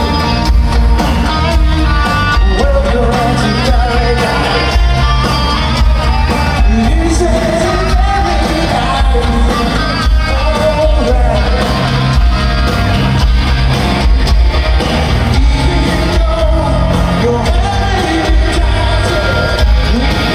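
Glam metal band playing live through a festival PA, with a male lead voice singing over guitars, bass and drums.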